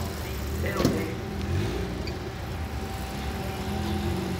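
Mustang drag car's V8 engine idling with a steady low drone.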